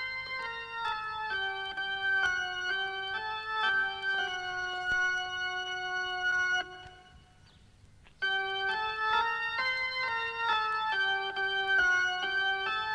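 Organ playing a song intro of held chords that change every half second to a second, breaking off for about a second and a half past the middle and then starting again.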